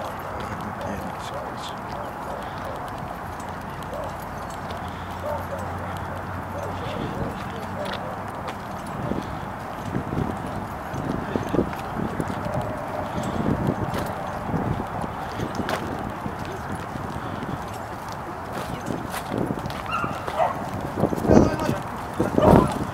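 Footsteps of several people walking across pavement and grass, irregular scuffs and steps over a steady outdoor background noise. Faint voices come in near the end.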